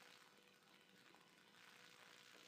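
Near silence: faint microphone hiss with a faint steady hum.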